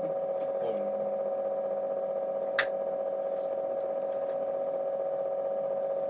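Small loudspeaker submerged in a bowl of water, powered as the voltage is turned up, giving a steady electrical hum of two held tones. A single sharp click about two and a half seconds in.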